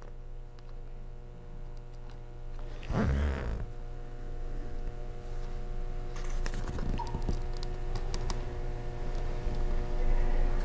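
Faint small clicks and scraping of fingers working a tiny metal M.2 standoff stud into its threaded hole in a laptop's chassis, scattered and thicker in the second half. A steady hum runs underneath.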